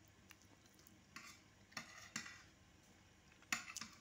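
Pencil strokes on drawing paper: a few short strokes in the second half, the loudest near the end.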